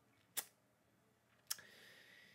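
Near silence broken by two faint mouth clicks about a second apart, the second followed by a soft intake of breath.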